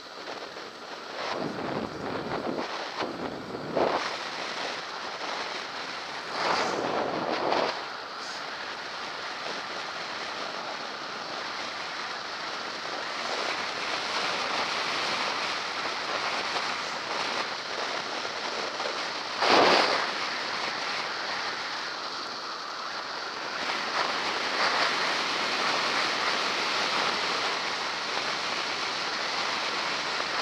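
Wind rushing over a head-mounted action camera's microphone on a moving bicycle: a steady roar of noise with several louder gusts, the strongest about twenty seconds in.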